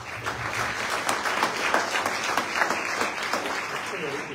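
Audience applauding, starting suddenly and going on steadily.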